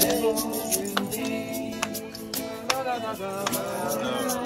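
Acoustic guitar strummed in a steady rhythm, with voices singing a song.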